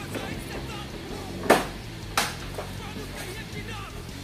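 Two sharp clicks, about a second and a half in and again under a second later, as screws are taken out of a Yamaha Mio Sporty scooter's plastic rear body panel with a Phillips screwdriver. Background music plays under them.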